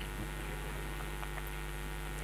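Steady low electrical mains hum in a pause with no speech.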